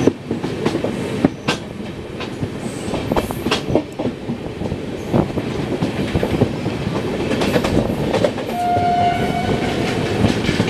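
Express train running at speed, heard from its own coach: a steady rumble with irregular clacks of the wheels over rail joints. Near the end a train horn sounds once, for about a second.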